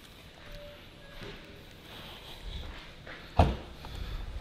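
A single short clunk about three and a half seconds in as the boot lid of a Volvo S60 sedan is released and opens; otherwise quiet showroom background.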